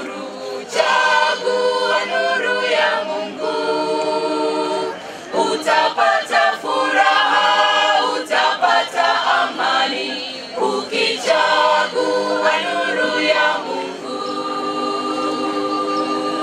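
Church choir of mixed men's and women's voices singing unaccompanied in harmony. It ends on a long held chord near the end.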